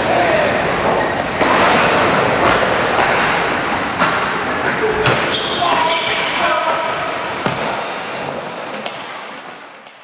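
Excited wordless shouting and whooping over a noisy hubbub, with a few sharp thuds, fading out over the last couple of seconds.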